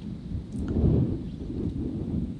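Low, steady rumbling noise of wind buffeting an outdoor microphone.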